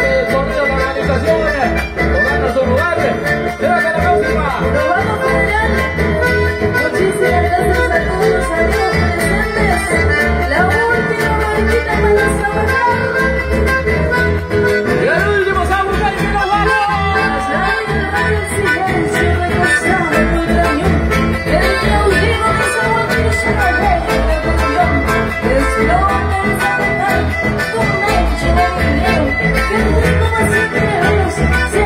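Live chamamé band playing through a stage PA, with an accordion carrying the melody over acoustic guitar and a steady electric-bass pulse.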